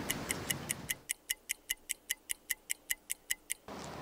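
Ticking clock sound effect, about five sharp even ticks a second, marking time spent waiting; street ambience drops away about a second in, leaving the ticks alone, and returns just before the end.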